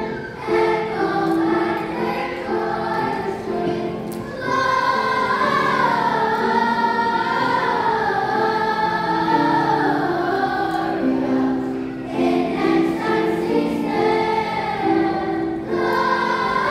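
Children's choir singing with piano accompaniment. Partway through the voices hold long, wavering notes for several seconds before returning to shorter phrases.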